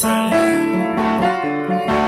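Piano chords played alongside a neck-rack harmonica holding long notes, in an instrumental passage with no singing.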